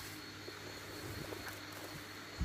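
Faint outdoor ambience: a steady, high-pitched insect call over a quiet low hum.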